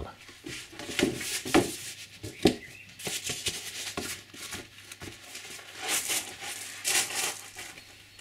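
Hands handling a glued foam seat pad: rustling and scraping as the foam is rubbed and pressed, with a few sharp clicks as spring clamps come off.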